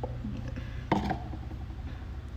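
A small metal mesh sieve handled while flour is sifted into a plastic bowl, with one short knock about a second in. A steady low hum runs underneath.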